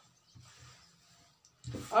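A short pause of near silence with only a faint soft noise, then a woman's voice starts speaking near the end.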